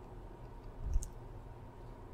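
Quiet room tone with a low steady hum, broken about halfway through by a single short click preceded by a brief low thump.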